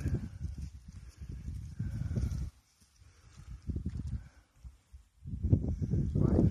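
Wind buffeting the phone's microphone in gusts: a low rumble lasting about two and a half seconds, a short gust near the middle, and another near the end, with near-quiet gaps between.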